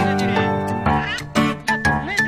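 Cartoon orchestral score with Donald Duck's squawky, quacking duck voice chattering over it from about the middle on.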